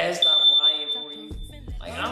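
A steady, high-pitched electronic beep tone, held for about a second and a half and cut off shortly before the end.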